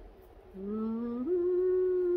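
A woman humming with her mouth closed: a low note from about half a second in, then a step up to a higher note held for about a second.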